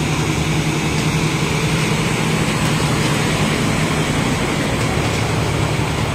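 An Isuzu box truck's diesel engine runs steadily as the truck drives through floodwater, with the rush and splash of water pushed aside by its wheels.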